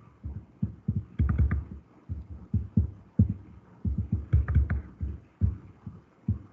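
Irregular clusters of dull, low thumps with a few light clicks among them, coming in short bursts about every second.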